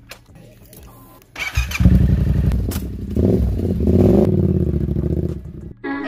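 Yamaha motorcycle engine starting about a second and a half in and revving, its pitch rising and falling, then cutting off suddenly just before the end.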